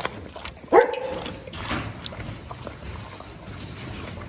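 A dog eating wet food from a metal basin, lapping and chewing. A dog barks once, sharply, just under a second in, the loudest sound.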